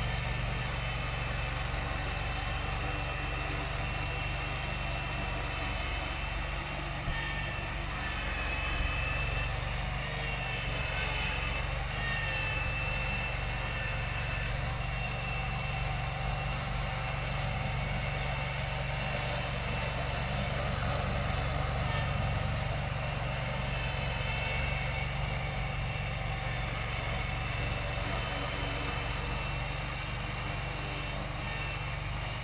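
Remote-controlled mower's engine running steadily as it cuts tall grass on a slope, with a faint higher whine that rises and falls now and then.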